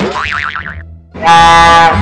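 A wobbling cartoon 'boing' sound effect, then, a little over a second in, a loud steady train-horn blast.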